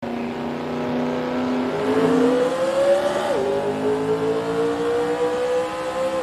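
Car engine accelerating through the gears: its pitch climbs steadily, drops at an upshift about three seconds in, then climbs again to another shift at the end.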